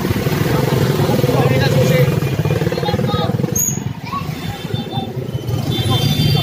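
A small motor-vehicle engine running close by, loud for the first few seconds and then fading after about four seconds as it moves off.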